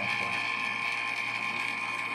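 Refrigeration vacuum pump running steadily with a constant high whine, evacuating a system that sits at about 1,580 microns.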